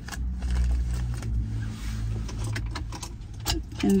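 Small items being packed into a leather crossbody bag by hand: scattered clicks, knocks and rustles of handling, with light metallic clinks, over a low steady rumble inside a parked car.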